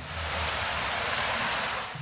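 A steady, even hiss of outdoor background noise from a field recording, with a faint low rumble under it. It cuts in and out abruptly.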